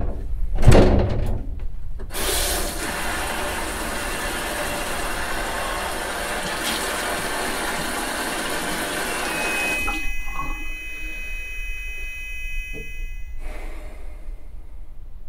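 Bathroom basin tap turned on, water running steadily into a ceramic sink for about eight seconds after a thump about a second in. From about ten seconds the flow is quieter with a faint high whine, until it stops just before the end.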